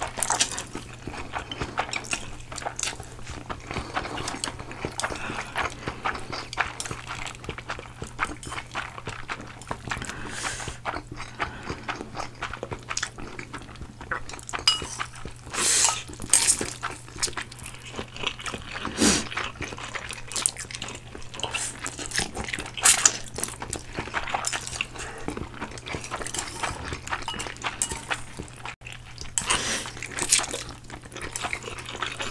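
Close-miked, deliberately loud slurping and chewing of instant ramen noodles by two people, full of wet mouth clicks, with several louder, longer slurps along the way. Chopsticks now and then clink against the ceramic bowls.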